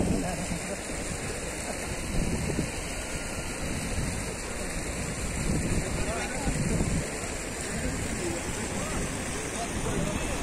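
Wind rushing over a phone microphone in a steady noise, with brief snatches of people's voices a couple of times.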